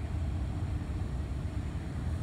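Steady low background rumble with a faint hum, with no distinct event standing out.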